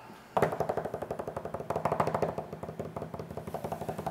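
A drum roll: fast, even strikes running together, starting about a third of a second in.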